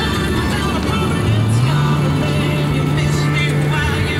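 Music playing on the car radio, with held bass notes and melodic lines above, heard inside the cab of a moving vehicle over steady road noise.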